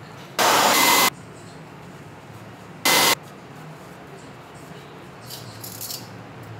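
Two short hissing blasts of air, like spray from a nozzle, each with a faint whistle. The first lasts under a second, just after the start, and the second is shorter, about three seconds in.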